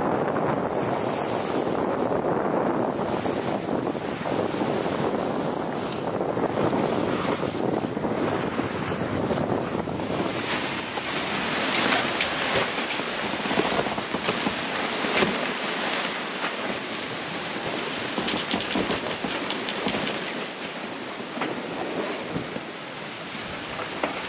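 Wind and sea water rushing around a Swan 57 sailing yacht under way, with wind buffeting the microphone. About ten seconds in the sound changes abruptly to a brighter hiss with fine crackles.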